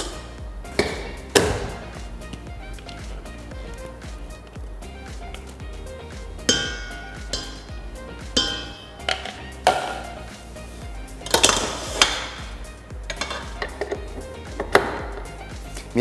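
Background music with held tones, with a few sharp clinks of a steel mixer bowl and a glass bowl being handled.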